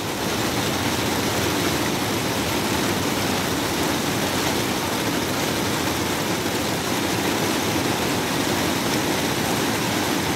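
Heavy rain in a rainstorm, a loud, even hiss.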